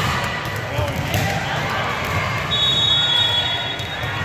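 Busy gym din: a crowd of voices talking and calling, with balls bouncing on the hard floor in an echoing hall. A high, steady tone sounds through the last second and a half.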